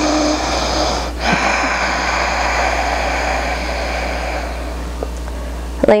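A long, slow exhale close to the microphone: a breathy hiss with a brief catch about a second in, fading away over about five seconds. A steady low hum runs underneath.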